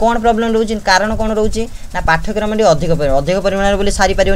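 A person's voice talking, with long vowels held at a steady pitch.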